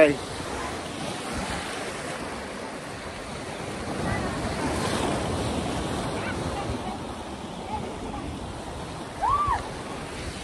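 Ocean surf breaking and washing over a rock shelf: a steady rushing that swells for a few seconds in the middle.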